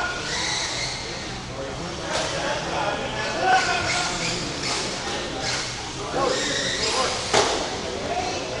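Radio-controlled cars running on an indoor off-road track: electric motor whine and tyre noise that come and go as the cars pass, over a murmur of voices in a large hall.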